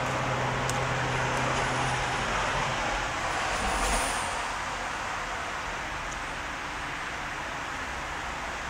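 Steady rushing outdoor noise with a low hum that fades out early, swelling to a peak about four seconds in and then easing off.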